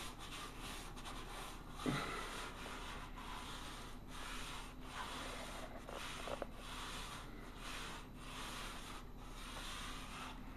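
Extra-fine 3M sanding block rubbed lightly by hand over dried spackle on a painted ceiling: a continuous scratchy rubbing in short back-and-forth strokes, smoothing the patch.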